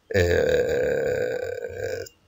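A man's voice holding one long hesitation sound, a drawn-out 'aaa', at a steady pitch for nearly two seconds, breaking off just before the end.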